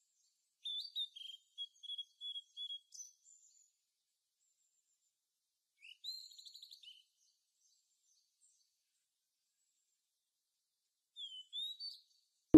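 Small birds chirping and singing: high-pitched chirps and short trills in three separate bursts, with silence between them.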